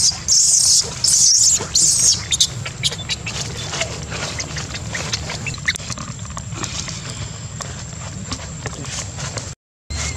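Baby long-tailed macaque screaming: about four shrill, high-pitched cries in quick succession over the first two seconds. After that only scattered small clicks and a low rumble remain.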